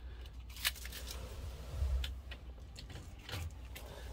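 A few light clicks and clinks of a key ring being handled, over a low steady hum.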